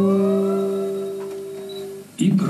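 Acoustic guitar chord struck once and left ringing, slowly fading away.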